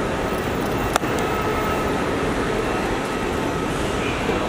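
Steady outdoor traffic and background noise, with a single sharp click about a second in.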